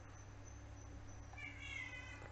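Faint room tone with a steady low electrical hum. In the second half there is a faint, high-pitched wavering call lasting under a second.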